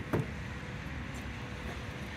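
Steady faint outdoor background hiss and low rumble, with two faint short sounds right at the start.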